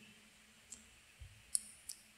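A pause in speech: faint room tone with three short, soft clicks, the first about a third of the way in and two close together near the end.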